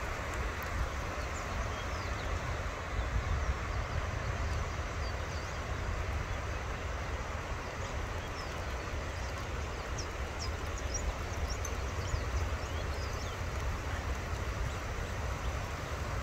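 Storm surf breaking below and rain falling, heard together as a steady rushing hiss over a low rumble.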